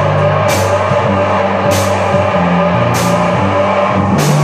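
Live psychedelic rock band playing an instrumental passage: fuzzy, distorted electric guitar and bass holding long notes over drums, with a cymbal crash about every 1.2 seconds.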